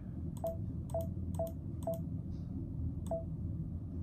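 Touchscreen key beeps from a Brother Luminaire sewing and embroidery machine: five short, identical beeps, four in quick succession and one more about three seconds in, each marking a tap on the rotate button.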